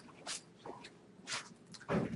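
A few short, scattered knocks and rustles, handling noise from the lecturer at the lectern.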